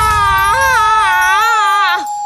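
A cartoon woman's long, wavering scream, her pitch swooping up and down, as she is shrunk by a spell; it breaks off near the end. Beneath it runs a thin steady tone sliding slowly downward.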